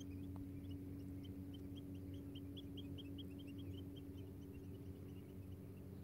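Faint bird calls: a quick series of short, high chirping notes, several a second, loudest in the middle, over a steady low hum.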